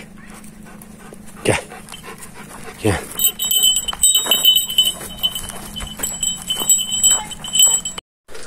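Dogs playing, with two short dog vocalisations about one and a half and three seconds in. A faint high ringing comes and goes from about three seconds on.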